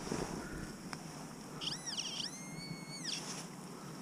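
Handheld metal-detecting pinpointer sounding as it is probed over a clod of soil, signalling a buried metal target, which is a shotgun cartridge. A few high-pitched tones slide up, hold and slide down, the longest held for about a second near the middle.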